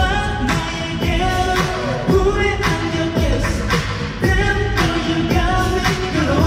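K-pop song performed on stage: a male vocalist singing into a handheld microphone over a backing track with a steady drum beat, about two beats a second.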